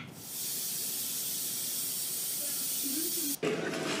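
A steady hiss that cuts off abruptly about three and a half seconds in.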